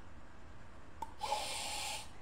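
A man sniffing hard in through his nose, one inhalation of just under a second starting about a second in, showing how to draw hot tea vapour up into the sinuses.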